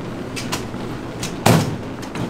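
Steady low machine hum with a few light knocks and one louder thump about a second and a half in.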